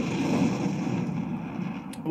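A sound effect from the anime episode playing back: a low, rumbling noise that slowly fades.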